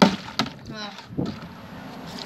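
A large plastic milk bottle landing upright on a concrete floor with a sharp thud, followed by a lighter knock less than half a second later and a duller knock about a second later.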